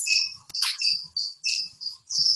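A series of short, high chirps, about three or four a second, with one sharp click about half a second in.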